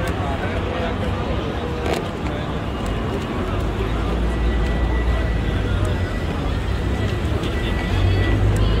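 Busy city-street ambience on a crowded sidewalk: passers-by talking and a steady low rumble, with one sharp click about two seconds in and a thin, steady high tone from about halfway on.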